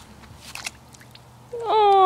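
A dog whining: a long, high, drawn-out whine starts about three-quarters of the way in, after a quiet stretch.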